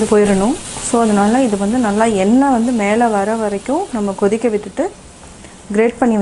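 Tomato puree and fried onions sizzling in a non-stick pan while being stirred with a wooden spatula, under a woman's voice talking for most of it; the voice stops for about a second near the end, leaving only the frying.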